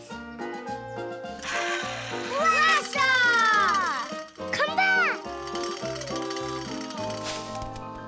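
Cartoon background music, with a noisy whoosh about a second and a half in as a toy propeller flyer is launched. Falling gliding tones and short children's exclamations follow.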